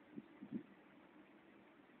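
Near silence: a faint steady low hum, with three brief soft low thumps in the first half-second.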